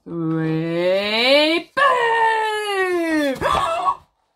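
A woman's voice drawing out the count 'three' with rising pitch, then a long shouted 'boo' that falls in pitch, and a short noisy gasp near the end.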